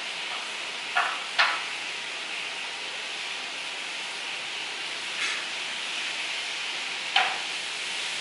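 Playing cards handled on a cloth-covered table: short swishes of the deck being spread and gathered, two in quick succession about a second in, a fainter one past the middle and a sharper one near the end, over a steady hiss.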